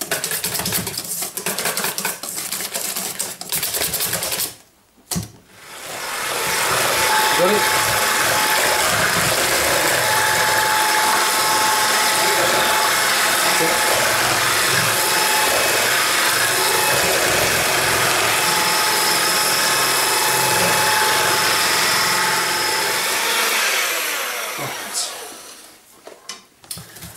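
A whisk beating batter in a stainless steel bowl, with rapid scraping clicks for about four seconds. After a brief break, an electric hand mixer runs steadily with its beaters in the batter, then stops near the end.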